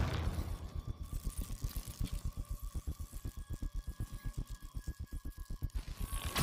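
A low, rapid throbbing pulse, about nine or ten beats a second, with faint steady high tones held over it: video game cutscene sound design.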